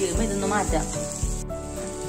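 Shredded ginger, shallots and curry leaves sizzling in hot oil as they are stirred in a pan, under background music.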